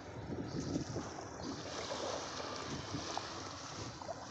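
Wind buffeting the microphone over small sea waves washing onto a shallow beach, a steady, uneven rush of noise.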